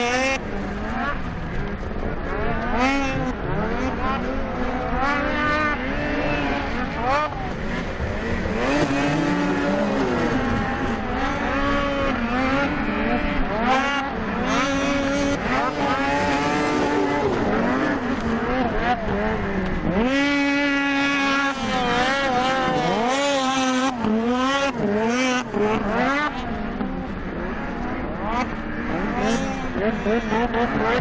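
Racing snowmobile engines revving hard and backing off again and again as the sleds run the course, the pitch climbing and falling every second or two. A little past two-thirds through, one engine holds a steady high rev for over a second.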